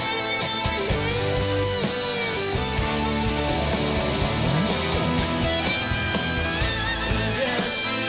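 Electric guitar solo over a live rock band: long notes bent in pitch and held, with wavering vibrato on high notes in the last couple of seconds.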